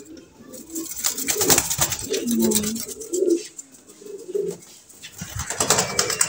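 Domestic pigeons cooing, a series of low, wavering coos. About a second in there is a brief flurry of rustling and clicks.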